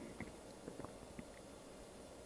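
Near silence: quiet room tone with a few faint small clicks from handling tweezers and wire while soldering a wire onto a circuit board.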